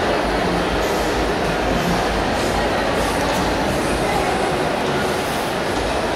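Steady background din of a busy indoor shopping mall: a continuous rumble and murmur with indistinct voices, unbroken by any distinct event.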